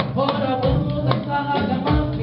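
Live band music in a ragga-and-côco style, with pitched instruments over a steady drum beat.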